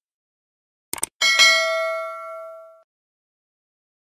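Subscribe-button animation sound effect: a quick double mouse click about a second in, followed at once by a bright bell ding that rings out and fades over about a second and a half.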